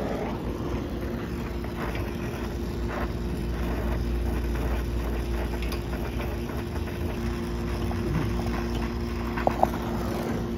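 Brazing torch burning steadily on a copper refrigerant line, a continuous rumbling noise with a steady low hum behind it. A second hum tone joins about two-thirds of the way through, and two short sharp clicks come near the end.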